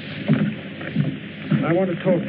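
A man's voice speaking a few words over the steady hiss of an old film soundtrack.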